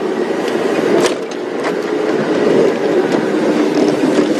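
Open safari vehicle's engine running as it drives over rough bush ground, with occasional knocks and rattles from the vehicle.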